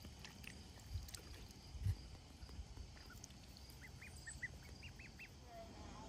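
Ducklings peeping: a quick run of about ten short, high peeps in the second half. Two low thumps come earlier, the louder about two seconds in.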